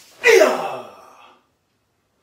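A man's loud karate kiai shout, dropping in pitch over about a second, given with a punch.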